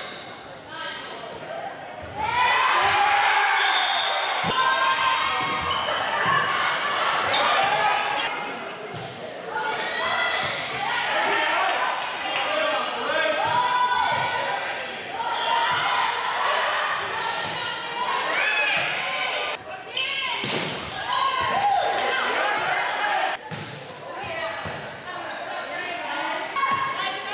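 Indoor volleyball rally on a hardwood gym court: the ball being struck again and again while players and spectators call out, echoing around the large hall.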